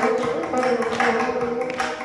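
Carnatic music in raga Panthuvarali on the veena, its plucked notes ringing on, with mridangam strokes accompanying.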